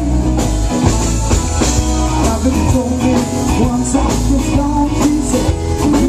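Live rock band playing in a bar: electric guitar, bass and drum kit keeping a steady beat, with a man singing lead into the microphone.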